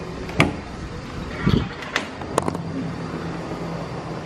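Road traffic running steadily in the background, with a few sharp clicks and a dull thump.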